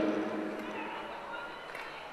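Ambience of a large indoor speed-skating arena: a steady low murmur with faint distant voices, as a man's announcement of results trails off at the start.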